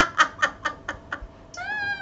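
People laughing, the laughter dying away over the first second. Near the end comes one short, high-pitched cry that rises and then falls in pitch.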